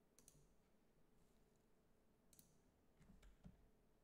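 Near silence, broken by a few faint clicks from working a computer: a pair about a quarter second in, another near the middle, and a few more near the end.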